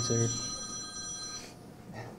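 A telephone ringing: a steady electronic ring of several high tones sounding together, which cuts off about one and a half seconds in.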